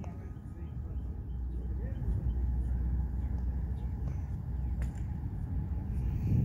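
Low outdoor background rumble, swelling from about two seconds in, with one faint tick near five seconds.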